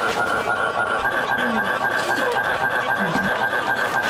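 An electronic laugh sound effect: a loud, harsh buzzing tone held at one steady pitch, standing in for a man's artificial replacement laugh.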